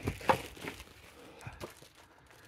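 Footsteps on rotten wooden floorboards and debris, with several short cracks and knocks as the decayed floor gives way underfoot.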